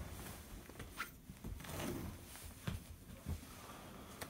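Faint rustling and a few soft knocks from someone moving about to pick up a dropped book.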